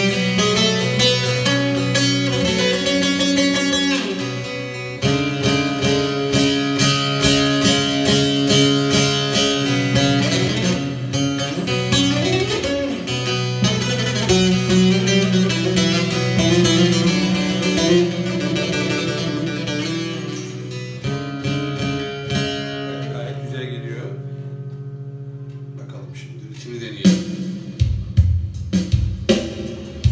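Long-necked bağlama (Turkish saz) played solo, a busy instrumental run of plucked and strummed notes as a test of the newly built instrument. Near the end the playing thins to a few ringing notes that fade. It resumes with sharp rhythmic strokes about three seconds before the end.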